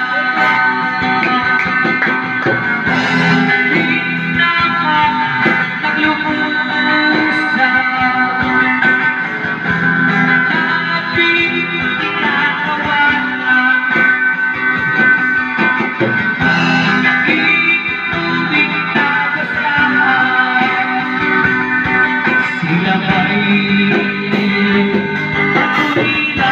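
Electric guitar played through a portable amplified speaker, an instrumental passage of melody and chords with no singing.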